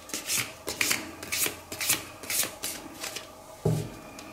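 A deck of fortune-telling cards shuffled in the hands: a string of short swishes about two a second, then a dull thump near the end.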